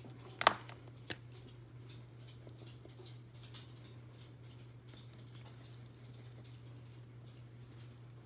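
A few sharp clicks in the first second, then a water-soluble crayon scratching faintly in short strokes across collaged book paper, over a steady low electrical hum.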